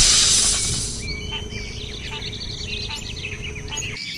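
A loud rushing whoosh that fades away about a second in, then a jungle ambience of many birds chirping with insects buzzing.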